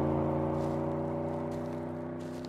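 A vehicle engine running at a steady pitch and slowly fading away.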